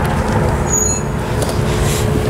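Steady low rumble of vehicle and street noise with a faint constant hum.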